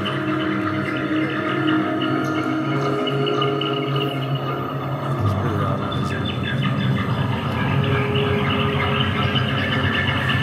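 Live ambient stage music: layers of sustained droning tones, with the low note changing about halfway through.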